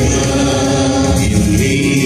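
Choir singing a slow hymn, the voices holding long, steady notes.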